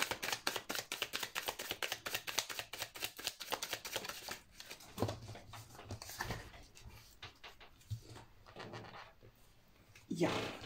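A Golden Art Nouveau tarot deck being shuffled by hand: a quick run of card flicks for the first four seconds or so. After that come a few scattered softer taps and slides of cards, fading to near quiet near the end.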